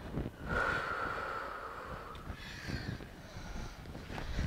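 A woman breathing hard between exercise moves, one long breath about half a second in carrying a faint whistle, with soft thumps of bare feet landing on a yoga mat.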